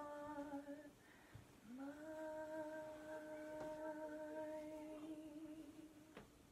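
A woman quietly humming a lullaby a cappella: one long note ends about a second in, then a second long, steady note begins with a slight upward slide and fades out near the end.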